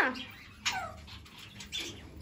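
Pet parakeets squawking: two short, sharp calls, the first a little over half a second in and falling in pitch, the second near the end.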